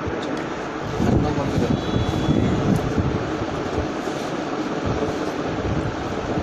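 Busy market hubbub: overlapping indistinct voices over a steady low rumble.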